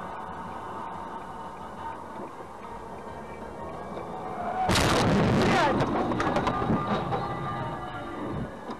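A vehicle collision: a sudden loud crash about five seconds in, lasting about a second, followed by rattling and clattering that die away over the next two seconds, over steady road noise.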